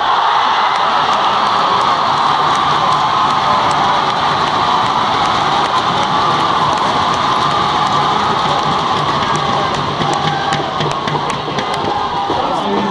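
Large arena crowd cheering and applauding after a point in a badminton match: a loud, sustained roar that eases slightly near the end, with a few sharp claps standing out.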